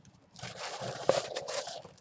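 Paper rustling as printed inserts are pulled out of a tissue-paper-lined cardboard box, with one sharp tap about a second in.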